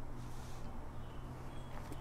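Quiet background during a pause: a steady low hum with light hiss, and a faint short high chirp near the end.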